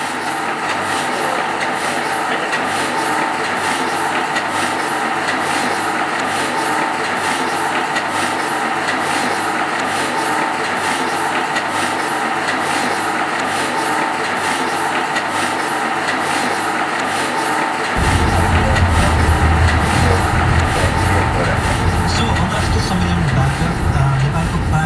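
Sheet-fed printing press running, a steady mechanical noise with a regular clatter of several beats a second. About three-quarters of the way in, a deep low rumble joins and the sound grows louder.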